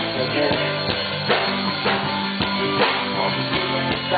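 Live rock band playing an instrumental passage: a drum kit keeping a steady beat under electric guitar and bass.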